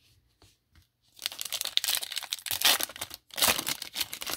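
A foil trading-card pack wrapper being torn open and crinkled by hand, in two crackly stretches starting about a second in.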